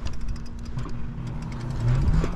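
Riding a Lyric Graffiti electric bike: steady wind rumble on the microphone with a constant low motor hum underneath.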